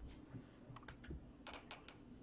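Very faint light clicks and taps of trading cards being handled and set on a stack: a couple of single ticks, then a quick run of four about a second and a half in.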